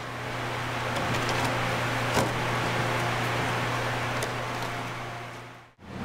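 Steady hum and hiss of a ventilation fan, with a single light click about two seconds in; the sound fades out just before the end.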